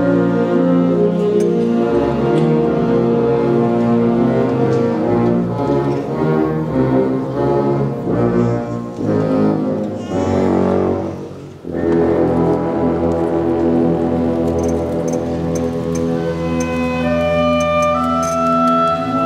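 Wind ensemble of brass and woodwinds playing held, full chords. The sound thins out and drops away briefly about eleven seconds in, then the full band comes back in with sustained chords.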